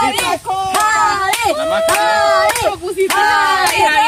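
A group of excited voices calling out, one holding a long note midway, over scattered hand claps.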